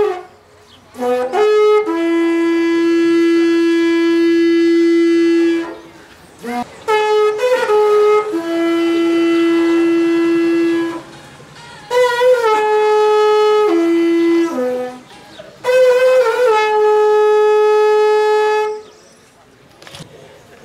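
Wooden horn blown in four phrases, each stepping between a few notes and settling on a long held low note, with short breaks for breath between them.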